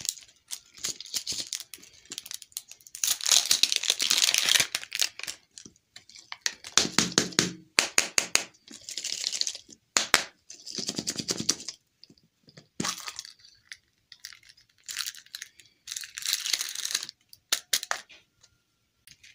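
A printed plastic wrapper crinkled and torn off a ball-shaped capsule lollipop by hand, in repeated bursts of rustling. Later the hard plastic capsule is pried open with several sharp clicks.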